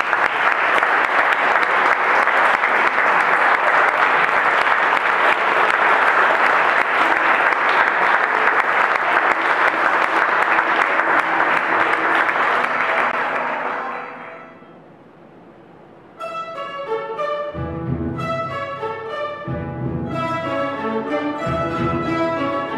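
Audience applauding for about fourteen seconds, dying away. After a short pause, a plucked-string orchestra of bandurrias, lutes and guitars starts playing, with a double bass joining a moment later.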